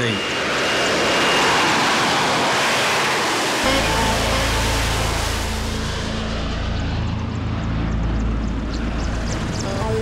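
Harrier GR9 jump jet's Rolls-Royce Pegasus turbofan running in a hover, a loud steady jet rush with a thin whine over it in the first second or so. About three and a half seconds in, a deep low rumble joins, and the high hiss fades from about six seconds on.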